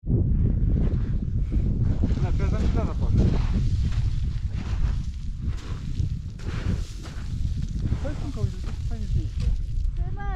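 Wind buffeting the camera microphone in strong, uneven gusts on an exposed volcanic slope, with faint voices twice beneath it.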